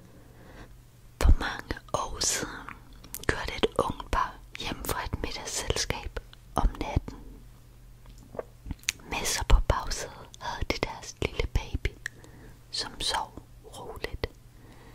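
A voice whispering in short, breathy phrases, with sharp clicks between them and a low steady hum underneath.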